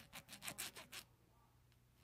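Small needle file scraping inside the aluminium exhaust port of a Predator 212 cylinder head: a quick, faint series of short scratching strokes for about a second, then stopping. The strokes round off the sharp lip under the exhaust valve seat in a mild port job.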